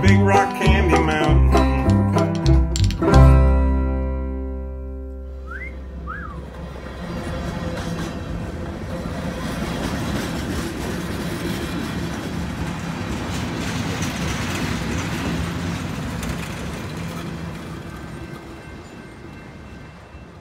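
A string band of banjo, guitar, upright bass and spoons plays its last notes and ends on a chord that rings out and dies away a few seconds in; two short rising whistled notes follow. Then a freight train of tank cars rolls past with a steady rumble and rattle of wheels on rail, fading toward the end.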